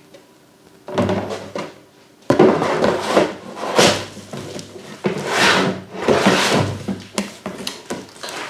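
Large hard-plastic parts of a leg massage machine being lifted, slid and set down in a cardboard box: plastic scraping and rubbing against plastic and cardboard. The sounds start about a second in and come in a string of swells.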